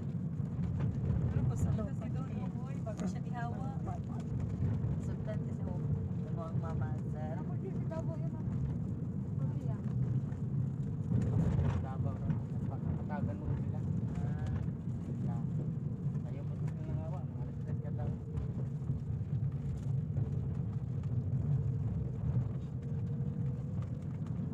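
Steady low rumble of a moving vehicle's engine and road noise, heard from inside the vehicle, with faint indistinct voices now and then.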